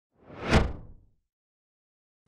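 A single whoosh sound effect that swells to a peak about half a second in and fades away within about a second.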